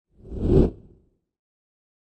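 A single whoosh sound effect for a logo reveal: it swells quickly, peaks about half a second in, and dies away by about a second in.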